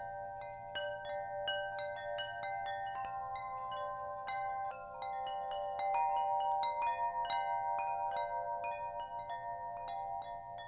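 Wind chimes ringing, with many irregular, overlapping strikes whose tones keep sounding.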